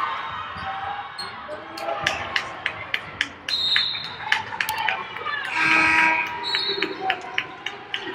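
A basketball dribbled on a hardwood court, a run of sharp bounces about two or three a second, with short high sneaker squeaks. Voices echo through the arena, and a louder voice or call rises briefly around six seconds in.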